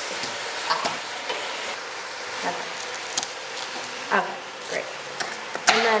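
Chicken frying in a pan, a steady sizzle, with scattered sharp knocks of a kitchen knife striking a plastic cutting board as sweet potatoes are sliced.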